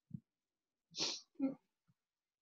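A person's breathing sounds close to the microphone: a short low huff, then a sharp sniff about a second in and a brief throaty catch just after. The speaker is choked up mid-sentence.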